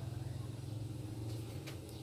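A steady low hum, like an engine running nearby, with a few faint light clicks of a metal ladle against the wok.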